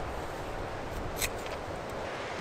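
A single short snip of scissors cutting through the lobster pot's netting mesh about a second in, over a steady outdoor background hiss.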